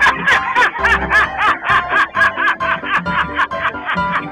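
A man laughing in quick, repeated high snickers, about five a second, over background music.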